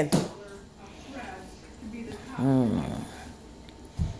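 A short wordless vocal sound from a person, a drawn-out tone rising then falling in pitch, about two and a half seconds in, against a low, quiet room background.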